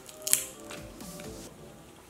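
Crab leg shell cracking once, a short sharp snap as gloved hands pull the leg apart, with faint background music under it.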